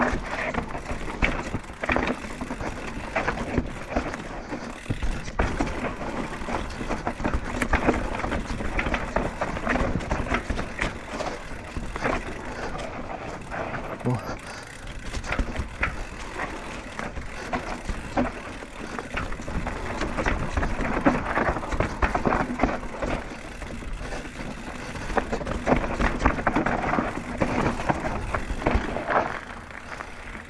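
Banshee Scream downhill mountain bike descending a rough, washed-out forest trail: continuous clatter and rattle of the bike over roots and stones, with the tyres crunching on the dirt and frequent sharper knocks from hard hits.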